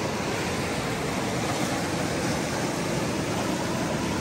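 Mountain river rushing over boulders in whitewater rapids: a steady, unbroken rush of water.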